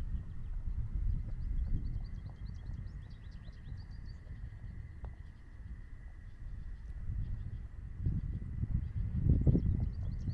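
Wind buffeting the microphone as a low rumble, louder over the last two seconds, with birds chirping in a quick run of short calls during the first half and a faint steady high tone.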